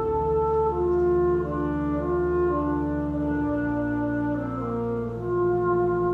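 Pipe organ playing slow-moving sustained chords over a held bass note that changes about halfway through.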